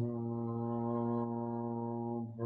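A man's voice chanting one long, steady low note in a qigong sound practice.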